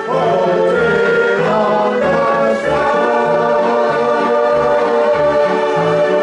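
A man sings to a strummed banjo ukulele over a steady low bass beat, holding one long note from about two seconds in.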